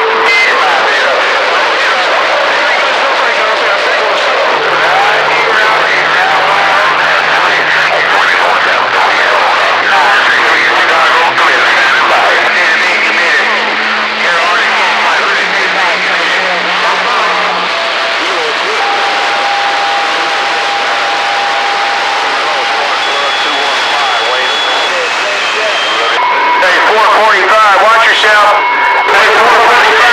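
CB radio receiver on channel 28 picking up distant skip stations: loud static with garbled, overlapping voices. Several steady whistles of different pitches come and go, a few seconds each.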